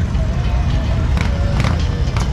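Motorcycle engines running in a steady low rumble, with voices and music mixed in.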